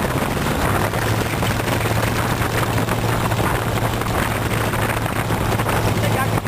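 Open-bodied rat rod's exposed engine running at a steady cruise, a constant low drone under a rough rushing noise from the moving car.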